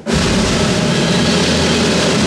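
Concert band coming in suddenly at full volume and holding a loud, sustained chord, with strong low brass.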